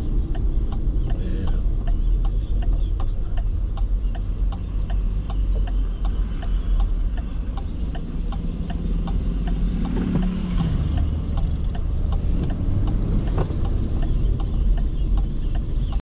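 Car driving on a paved road, heard from inside the cabin: a steady low rumble of engine and tyres, with a run of light, regular ticks. About ten seconds in, another engine's pitch rises and falls as a vehicle passes.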